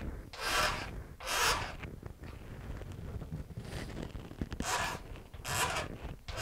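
A thin steel razor blade, used as a scraper, scraping the guitar's wooden end wedge down flush with the sides in short hissy strokes: two strokes in the first second and a half, fainter scraping in the middle, then two more near the end.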